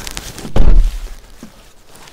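A car door being pulled shut: one heavy thump about half a second in, followed by fainter rustling.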